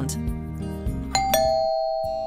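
Two-note ding-dong doorbell chime about halfway through: a higher note, then a lower one a moment later, ringing on. It plays over soft background acoustic guitar music.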